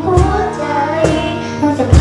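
A young girl singing a melody with acoustic guitar accompaniment. A strong beat lands about once a second.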